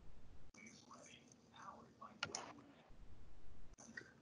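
Faint sounds picked up by open microphones on a video call: a soft, low murmured voice and a few small clicks, over a low rumble.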